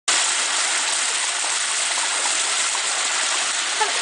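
Water gushing steadily out of a concrete tank outlet and splashing down onto coffee beans and a wooden board frame in a coffee wet mill's washing channel. A voice starts just before the end.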